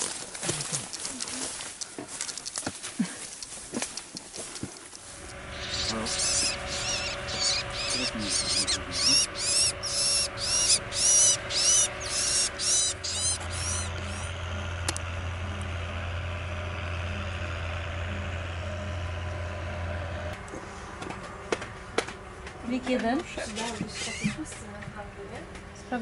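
Crackling and rustling of footsteps through dry grass and brush. Then a small bird calls in a rapid series of high, rising-and-falling chirps, about two a second, for several seconds over a steady low hum.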